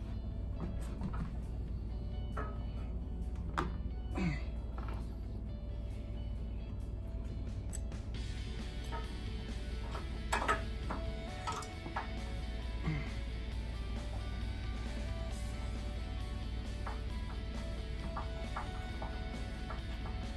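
Quiet background music, with a few light clicks and taps as a hand screwdriver drives a screw into a plastic cover on a treadmill upright.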